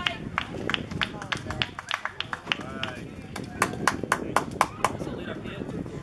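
Scattered hand-clapping from a small group of spectators, several claps a second and uneven, with voices calling out underneath.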